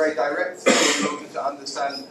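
A man clearing his throat once, a short loud rasp about two-thirds of a second in, between broken fragments of a man's speech.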